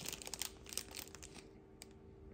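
Small light clicks and rustling of hard resin 3D-printed model parts being handled and picked up, thinning out about one and a half seconds in.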